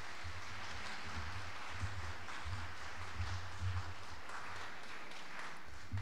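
A congregation applauding, a steady patter of clapping from many hands.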